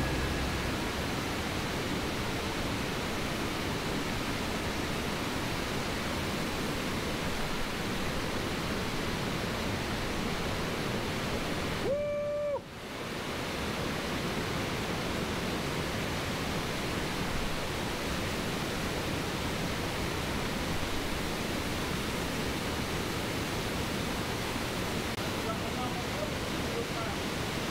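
Waterfall rushing steadily. About halfway through, the water noise cuts out for half a second with a short steady tone in the gap, then comes back.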